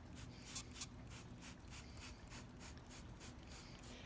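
Trigger spray bottle misting water onto perlite, in quick, faint, repeated hissing spurts, about three or four a second.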